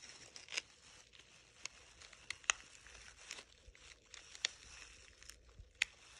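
Small scissors snipping at the tough silk wall of a cecropia moth cocoon: a faint scattering of sharp clicks and crackles, with loose plastic gloves crinkling.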